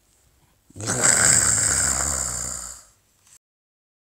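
A person voicing a bear's growl, 'grrrr', as printed on the page: one rough growl of about two seconds that starts just under a second in and fades out.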